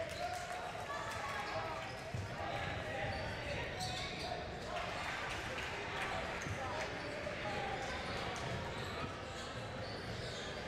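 Gym game ambience: many voices of players and spectators talking at once, with a basketball bouncing on the hardwood court now and then.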